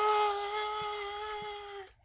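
A man's voice holding a long, steady, high "Ahh!" cry that fades out over about two seconds, acting out a bear screaming in pain.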